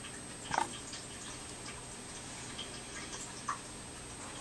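Quiet room tone: a steady faint hiss with a thin high whine, broken by two brief soft sounds, one about half a second in and a smaller one near the end.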